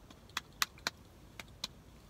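Five light, sharp clicks spread over about a second and a half as a pair of eyeglasses is handled.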